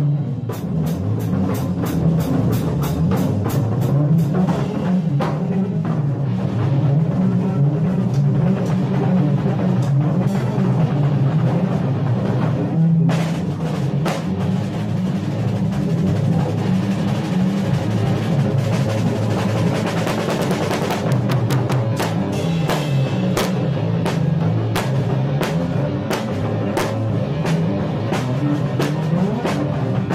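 Live rock jam: a drum kit played with a steady stream of cymbal and drum strokes over a low, moving instrument line, the strokes getting denser about two-thirds of the way through.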